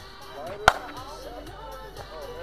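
A bat hitting a pitched ball once, a sharp crack about two-thirds of a second in with a brief ring.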